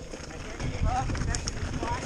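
Pivot Firebird mountain bike rolling down a rocky trail: a low, rough rumble of tyres and frame over rock, with a few light clicks.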